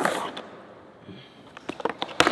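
Skateboard wheels rolling on a smooth concrete floor, then a few sharp clacks near the end as the board's tail comes down on the floor.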